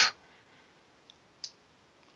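A pause in a man's speech: faint hiss with two small clicks, a tiny one about a second in and a sharper one about a second and a half in.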